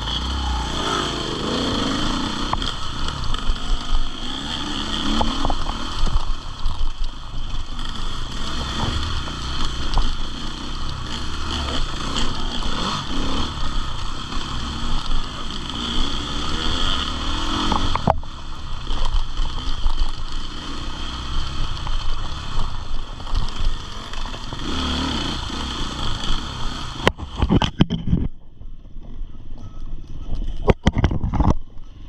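KTM enduro motorcycle engine heard from the bike itself, revs rising and falling continuously as it is ridden along a rough dirt trail, with a sharp knock about eighteen seconds in. In the last few seconds the sound turns duller and is broken by a string of knocks and clatter.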